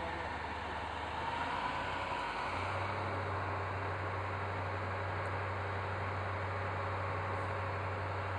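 A vehicle engine idling: a steady low drone under outdoor background noise, shifting slightly about two seconds in.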